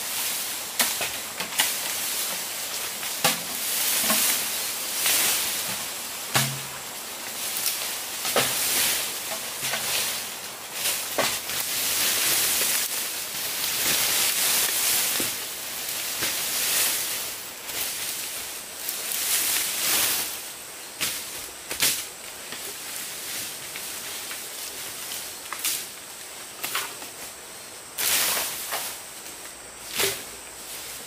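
Leafy bamboo being cut and pulled down: long rushes of rustling and swishing leaves with irregular sharp cracks and snaps of the stems.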